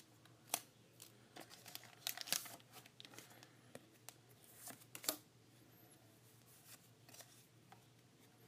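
A foil Pokémon card booster pack being torn open and its cards handled: faint crinkling with a scatter of short, sharp clicks and snaps.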